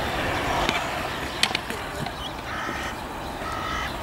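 Stunt scooter wheels rolling on smooth concrete, a steady rumble with a few light clacks from the deck and wheels about a second in.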